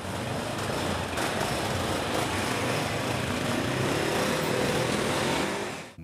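Motor vehicle engines running amid steady street noise, with a faint rising engine note in the last couple of seconds. The sound cuts off suddenly just before the end.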